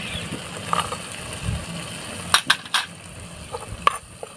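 Steel spoon clinking and scraping against a clay pot as cashews and cherry tomatoes are stirred in hot oil, over a faint frying sizzle. A quick cluster of sharp clinks comes about two and a half seconds in, with a few more near the end.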